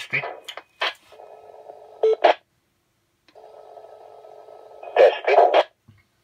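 Audio from a ham radio transceiver's speaker: DTMF touch-tone command codes sent over the SvxLink radio link, in two stretches of steady tones over radio noise, each ending in short louder bursts.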